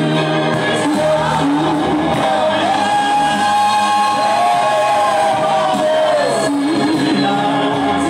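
Live gospel singing by a group of voices through microphones, with a long held note in the middle.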